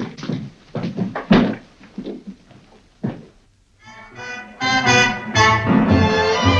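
A few footsteps on a hard floor, spaced roughly half a second apart. After a short hush, orchestral music led by strings fades in about four seconds in and swells.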